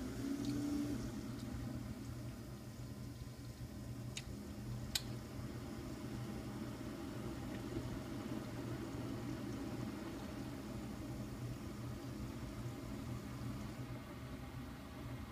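Keurig single-cup coffee maker brewing, with a steady low hum and liquid sounds. Two small clicks come about four and five seconds in.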